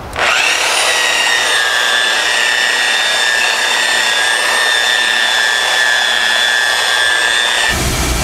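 Large electric polisher-sander buffing wax on a fibreglass gelcoat hull, running with a steady whine. It rises to speed right at the start and cuts off abruptly shortly before the end.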